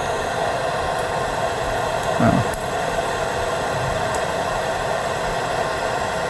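Steady room tone of a lecture hall: an even hiss with a hum in it. A brief faint voice sound comes about two seconds in.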